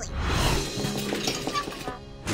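Cartoon sound effect: a sudden crash of noise that fades away over about two seconds, with music underneath.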